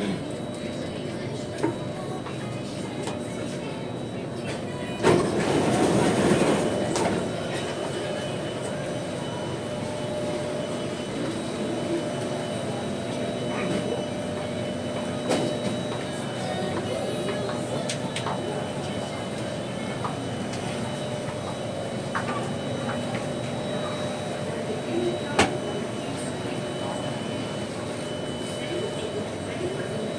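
Inside a C751A metro car running through a tunnel: steady rumble of wheels on rail with the steady tones of its Alstom ONIX 1500 IGBT-VVVF traction system. A louder rush of noise comes about five seconds in and lasts some two seconds, and a few sharp clicks follow later.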